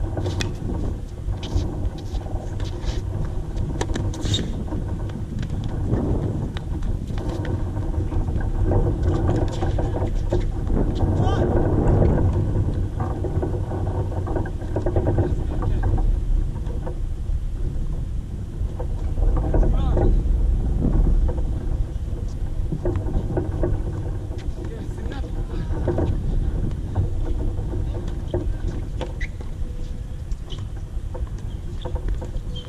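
Steady low rumble of wind buffeting an outdoor camera microphone, with several sharp tennis-ball strikes off racket strings and court in the first few seconds, and faint voices.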